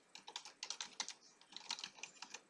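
Computer keyboard typing: a quick, uneven run of about a dozen faint key clicks as a short word is typed.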